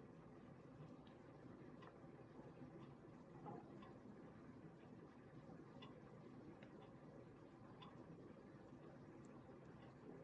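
Near silence: faint room tone with a few small faint ticks of handling.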